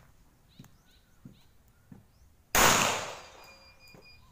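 A single pistol shot from a Rock Island Armory 1911, sudden and loud, about two and a half seconds in, with a short echo dying away over about a second.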